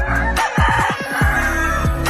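A gamefowl rooster crowing once, for about a second, starting near half a second in, over background music with deep falling bass notes.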